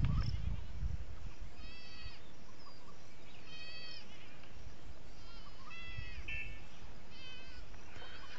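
High-pitched animal calls, short and repeated four times, about one every one and a half to two seconds, over steady low background noise.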